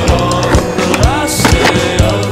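Music with a steady beat and a gliding melody, over a skateboard rolling on concrete, with a short scraping hiss about one and a half seconds in.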